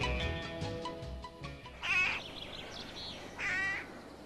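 Mallet-percussion music fading out, then a bird calling twice, about a second and a half apart.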